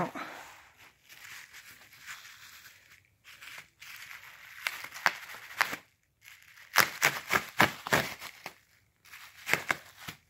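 Bubble wrap and plastic packaging rustling and crinkling under hands, with a run of sharp crackles about two-thirds of the way through.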